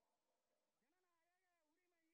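Near silence, with a very faint drawn-out pitched call from about a second in.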